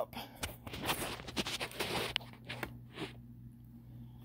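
Handling noise: irregular rustling and light scraping strokes as the upright vacuum and a light are moved around its nozzle, dying down in the last second, over a faint steady low hum.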